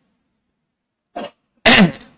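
A man sneezes into a close microphone: a short catch of breath a little past a second in, then one loud, sharp burst near the end.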